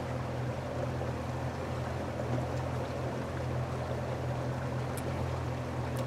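Boat motor running steadily while under way: a low, even hum under a steady hiss of water and air.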